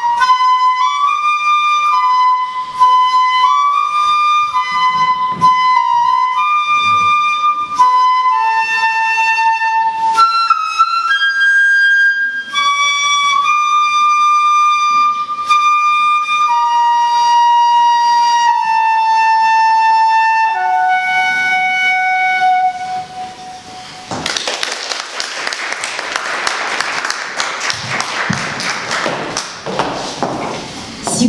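Solo concert flute playing an unaccompanied melody, a single line of clear held and stepping notes that closes on a long lower note. About six seconds before the end, applause breaks out as the piece finishes.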